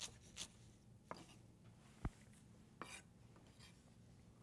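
A few faint, irregular knife taps on a wooden cutting board as fresh parsley is rough-chopped, over near-silent room tone.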